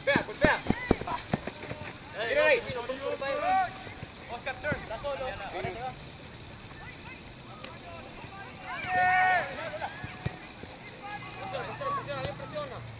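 Shouts and calls from players and spectators during a soccer match, heard over open-air background noise. A few sharp knocks come in the first second, and a louder shout comes about nine seconds in.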